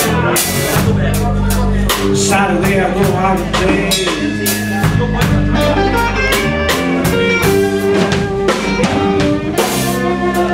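Live blues band playing an instrumental passage: a Tama drum kit keeps a steady beat under electric bass and electric guitars.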